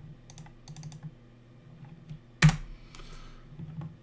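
Computer keyboard and mouse clicks while a file is saved: a few light, scattered clicks, then one much louder knock about two and a half seconds in.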